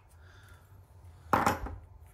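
A brief clunk of a brass pipe fitting handled against a wooden worktop, about one and a half seconds in, against a quiet room with a low hum.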